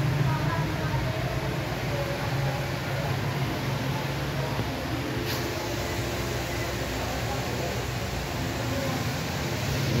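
Steady low mechanical hum of running machinery, with faint voices in the background and one brief click about halfway through.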